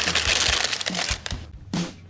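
Small coloured aquarium pebbles pouring from a plastic bag into a clear plastic tank: a dense rattle with crinkling of the bag that thins out and stops about a second and a half in.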